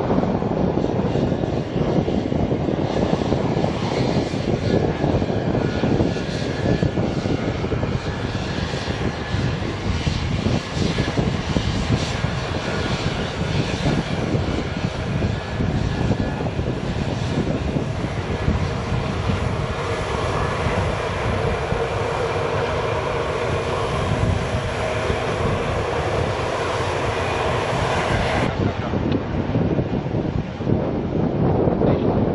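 Irkut MC-21-300 airliner's geared turbofans running at low power as it taxis, a steady rumble. From a little past halfway, a steady multi-tone engine whine comes up over the rumble.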